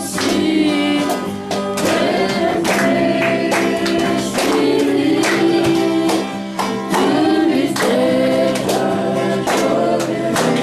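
Gospel worship song sung by a group of voices, with instrumental backing and a steady beat.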